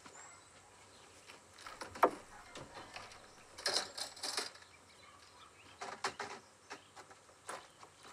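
Someone rummaging through a car trunk for a hammer: scattered light clunks, knocks and rustles of things being moved about, with a sharper knock about two seconds in.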